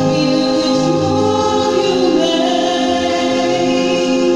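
Karaoke music played loud through a videoke machine: a backing track with a steady, repeating bass line and a voice singing the melody over it.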